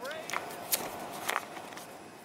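Footsteps going down an aircraft's airstairs: a few irregular sharp clicks over faint outdoor background sound, which fades down near the end.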